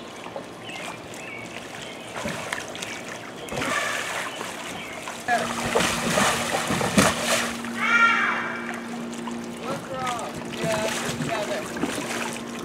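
Pool water splashing as a child runs and stumbles inside an inflatable water-walking bubble ball, loudest around the middle, with short voices calling out.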